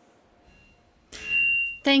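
Near silence, then about a second in a short loud hiss carrying a thin, steady high tone, lasting under a second, just before a woman starts to speak.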